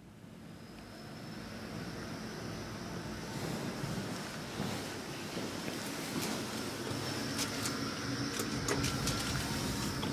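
Hydraulic elevator machinery running: a steady low hum under a rushing noise, with a few sharp clicks in the last few seconds.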